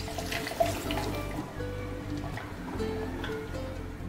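Milk pouring in a steady stream into a plastic blender jar onto fruit and ice cream, under background music. The pouring noise stops near the end.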